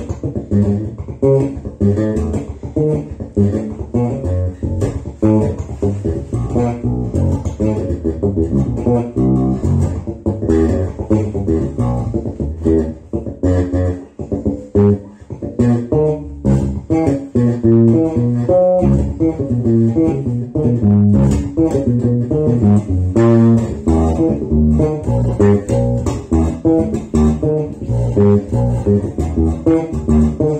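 Electric bass guitar, a sunburst Precision-style bass, played fingerstyle in a continuous run of plucked low notes, with a short lull about halfway through.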